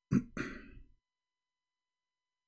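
A man clearing his throat: two short rasps in quick succession, the first the louder, over in under a second.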